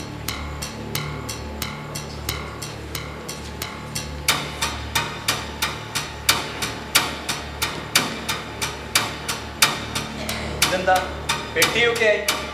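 Stage background music: a steady rhythmic tapping beat, about three strikes a second, over a low sustained drone. The taps become louder about four seconds in.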